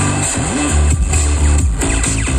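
Electronic dance music from a DJ set played loud, with a heavy bass line and pitch sweeps that slide up and down.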